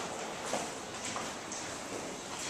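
Footsteps on a hard floor, roughly two steps a second, over a steady murmur of background noise.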